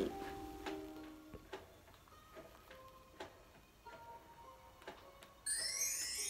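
Faint, soft music with scattered light ticking notes, then, about five and a half seconds in, a sudden bright, sparkling twinkle of chimes as a children's cartoon intro starts playing on a television.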